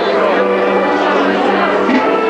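Music with long held notes playing steadily while people dance to it, with voices from the crowd mixed in.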